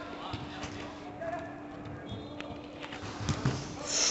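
Indoor five-a-side football game: scattered thuds of the ball and players' feet on the artificial pitch and faint distant shouts, over a steady low hum. A couple of heavier thumps come near the end.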